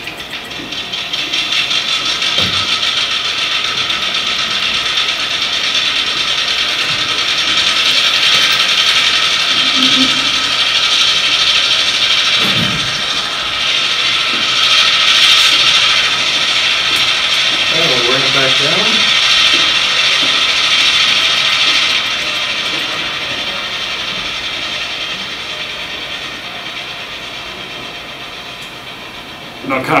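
A TCS WOWDiesel sound decoder playing an EMD diesel prime mover through a model locomotive's small speaker, notched up from idle to full throttle and then back down to idle. The engine sound swells over the first couple of seconds, holds loud and steady, and then dies away over the last several seconds.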